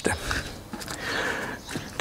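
Hands smoothing and pressing a sheet of puff pastry flat on baking paper over a wooden board: a soft rubbing and rustling of the paper that swells for about half a second just past the middle.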